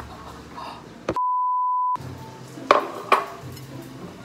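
A censor bleep: a single steady high beep of just under a second, starting about a second in, with the rest of the sound cut out while it plays. It most likely covers an outburst after a knife cut to the thumb. Two sharp knocks follow about a second later.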